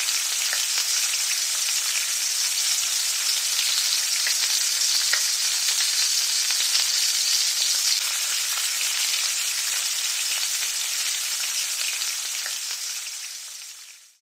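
Breaded jumping mullet backbones frying in shallow oil in a skillet: a steady sizzle with a few faint pops, trailing off near the end.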